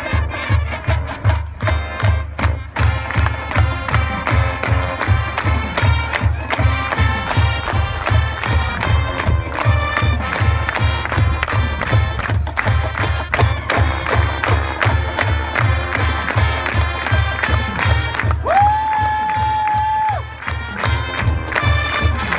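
High school marching band playing, brass over a steady, driving drum beat that starts abruptly. Near the end a single high note is held for about a second and a half.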